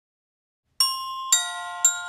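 Intro jingle of bright, bell-like notes: three struck about half a second apart after nearly a second of silence, each left ringing.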